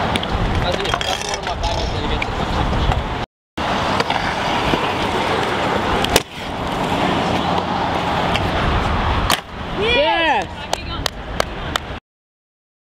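Stunt scooter wheels rolling fast over concrete, heard close with wind buffeting the microphone. A few sharp clacks of the scooter hitting the concrete, and a short voice call about ten seconds in.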